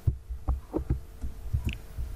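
Dull low thuds from computer keys and mouse clicks, about seven in two seconds, picked up over a faint steady electrical hum.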